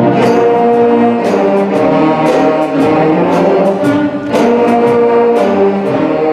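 Seventh-grade concert band playing: brass and woodwinds hold full chords over repeated percussion strikes, with a brief dip in loudness about four seconds in before the full band comes back in.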